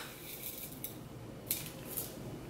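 Metal spoon scooping loose-leaf tea out of a steel canister into a small metal tin: soft scraping and rustling of leaves, with a couple of light clinks of spoon on tin, one about a second and a half in and another at the end.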